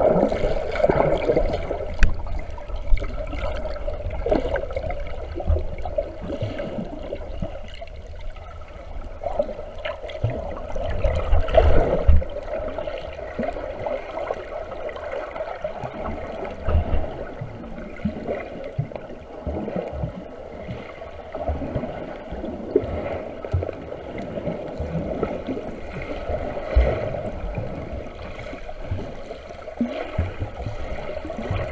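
Water sloshing and gurgling, heard muffled from underwater, with frequent dull low knocks.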